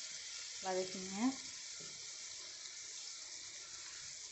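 Freshly added chopped onions frying in a hot kadai, a steady high sizzle.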